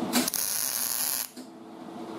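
MIG welder arc burning on auto-body sheet steel for about a second as one weld of a lap-joint stitch weld is laid, a steady high hiss that cuts off suddenly. A steady low hum is left behind.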